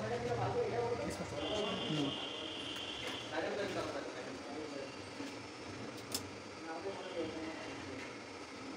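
Indistinct voices in the room, with a steady high tone held for about two seconds early on and a sharp click a little after the middle.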